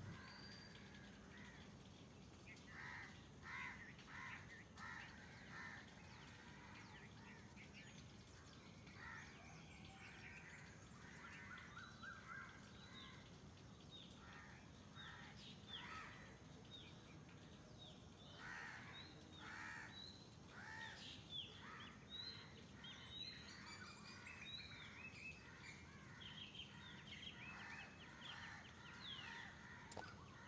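Faint outdoor ambience with many short bird calls and chirps scattered through it, busier in the second half.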